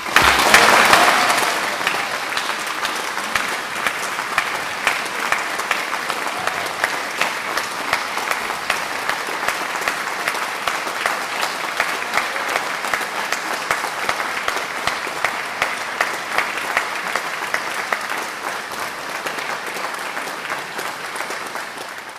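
Audience applauding at the end of the piece. The applause breaks out loudest in the first second, holds steady, and thins out over the last couple of seconds.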